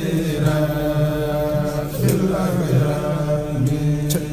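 Men chanting a xassida, a Senegalese Sufi devotional poem, in long held notes that bend slowly in pitch.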